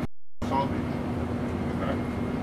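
Steady droning hum of a jet's cabin, one steady low tone over an even rush, with faint voices talking in the background. The sound drops out for a moment just after the start.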